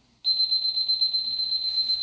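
Electronic cooking timer going off about a quarter second in: a shrill, high-pitched alarm tone, rapidly pulsing, signalling that the steak's cooking time is up.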